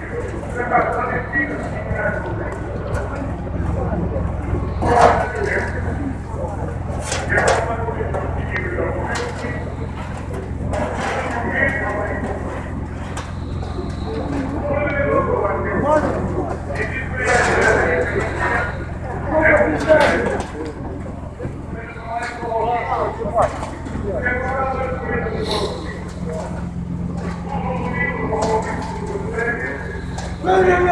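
Voices talking on and off, with a few sharp knocks, the loudest about seven and seventeen seconds in.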